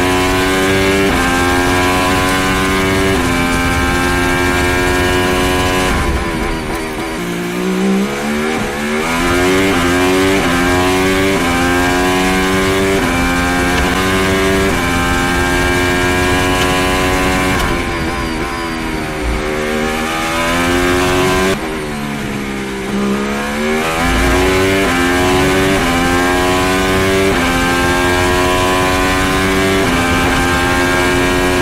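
Onboard sound of an Aston Martin AMR23 Formula 1 car's turbocharged V6 hybrid engine at full throttle, its pitch climbing and dropping back with quick upshifts every second or two. Three times, about six, eighteen and twenty-two seconds in, the revs fall through a run of downshifts under braking before climbing again out of the corner.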